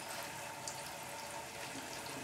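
6 kW continuous stripping still running: a steady, fairly quiet wash of boiling and flowing liquid, with a faint steady tone under it.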